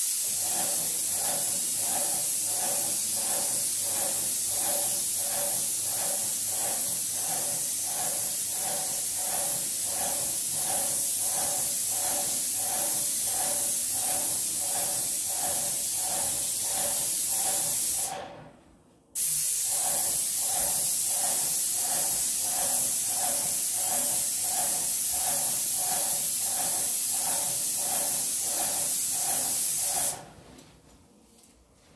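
Graco airless paint sprayer gun hissing as it sprays paint, with a regular pulse about twice a second. The spray stops for about a second just past the middle when the trigger is released, then starts again and cuts off at the very end.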